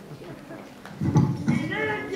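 A person's low-pitched voice starting about a second in, after a quieter moment.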